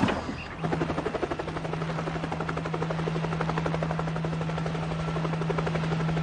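Helicopter sound effect: rotor blades chopping in a rapid, even beat over a steady engine hum, starting about half a second in.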